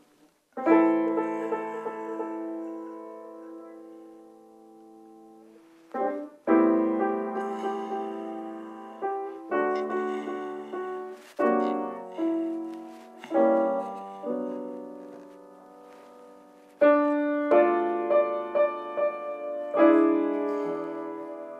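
Grand piano played solo in slow, sparse chords, each struck and left to ring out. The first chord rings for about five seconds, a quicker run of chords follows, and after another long decay more chords come in near the end.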